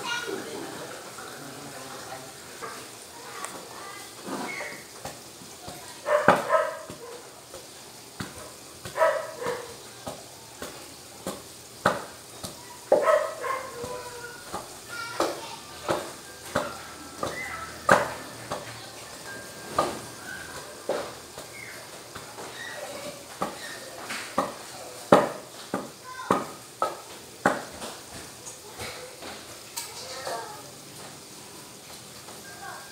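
Wooden pestle pounding cooked bananas in a stainless steel pot: a run of irregular thuds and knocks, roughly one a second, as the bananas are mashed for nilupak.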